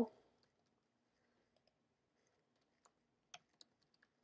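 Faint computer keyboard typing: scattered soft key clicks, with a few sharper clicks about three seconds in.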